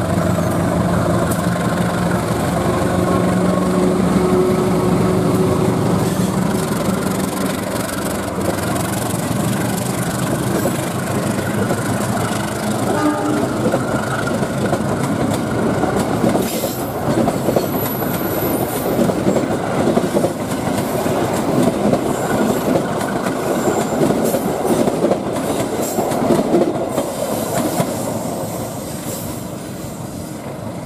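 Diesel-electric locomotive passing close, its engine droning with a steady tone, followed by its string of cars rolling by with wheels clicking rhythmically over the rail joints.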